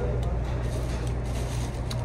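Steady low hum of restaurant room noise, with a few faint clicks over it.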